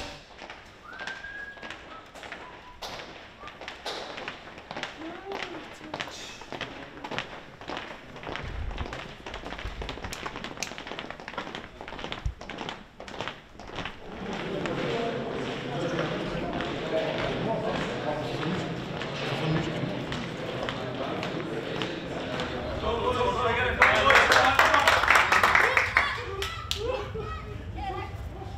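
Footsteps tapping and knocking on a hard indoor floor in the first half. From about halfway a murmur of men's voices builds, growing louder near the end.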